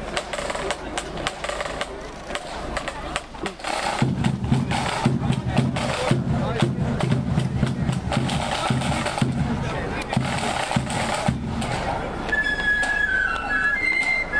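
Marching flute band's drums: sharp snare taps, joined about four seconds in by a heavier, steady drum beat, with the flutes starting a tune near the end.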